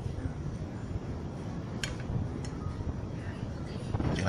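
Steady low background rumble, with two faint light clicks about two seconds in as chopsticks touch the glass plate and sauce bowl.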